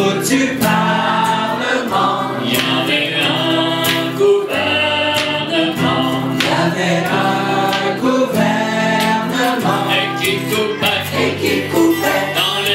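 Mixed choir of men's and women's voices singing a song in French in long held phrases, with acoustic guitar accompaniment.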